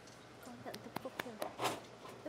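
Hushed bowling-arena crowd: faint murmured voices, with a few sharp, isolated hand claps.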